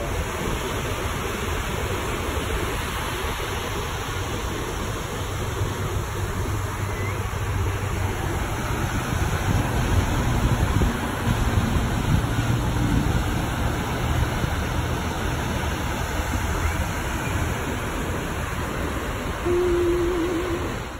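Waves breaking on a sandy beach: a steady rushing surf noise with a rumbling low end. A brief wavering tone comes in near the end.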